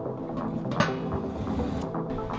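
A paper towel being pulled off its roll and torn off, with a sharp rip a little under a second in, over background music.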